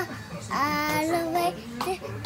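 A young girl singing: one held note starting about half a second in and lasting about a second, then a short note near the end.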